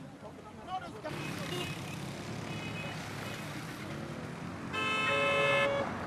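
Road traffic noise, with a vehicle horn giving one steady toot of about a second near the end, the loudest sound.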